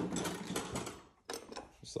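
Rapid mechanical clattering, a dense run of clicks lasting about a second, then a shorter burst of clicks.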